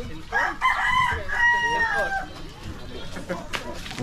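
A rooster crowing once, a loud call of about two seconds that ends on a long, slightly falling note.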